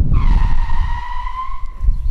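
Car tyres squealing in a hard braking stop: one steady squeal that lasts nearly two seconds and sags slightly in pitch, over a low rumble from the road. The hard stop shows the brakes biting firmly again with the newly replaced and bled master cylinder.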